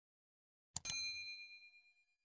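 A quick double mouse click about three-quarters of a second in, then a bell ding that rings and fades over about a second. It is the notification-bell sound effect of a subscribe animation.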